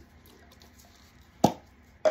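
A single sharp knock about one and a half seconds in from a can of spray foam being handled, with faint room tone around it.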